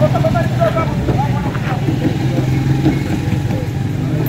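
Engines of road vehicles running with a steady low hum as a pickup truck and a motorcycle move off along the road, with people's voices mixed in.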